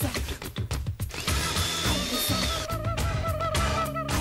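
A blender motor whirring, starting about a second in, mixed over 1990s-style film song music with a beat.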